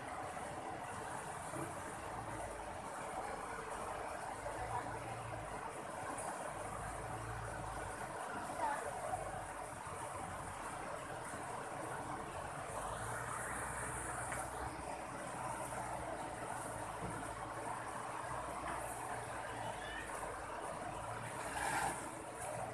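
Steady rush of river water running over a line of rocks and small rapids, with a high insect buzz above it.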